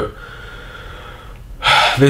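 Low room tone, then about one and a half seconds in a person takes a short, loud, sharp breath in, like a gasp.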